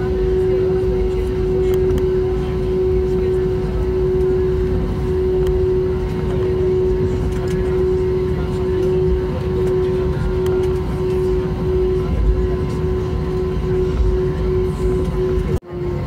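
Cabin noise of an Airbus A320-232 taxiing: a steady drone of its IAE V2500 engines at idle, with a constant hum over a low rumble. The sound cuts out abruptly for an instant near the end.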